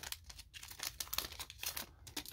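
Foil wrapper of a Pokémon Sword & Shield booster pack crinkling as the cards are slid out of it by gloved hands: a run of small, quick crackles.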